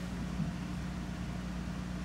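A short lull in a live rock band's ballad: only a low, steady hum from the stage sound is left between sung lines, with no strumming or voice.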